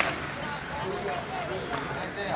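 Indistinct chatter of several people talking at a distance over a steady low background rumble, with a sharp click at the very start.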